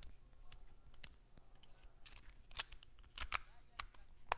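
Faint, irregular small clicks and ticks, a few louder ones just after three seconds in, over a low steady hum.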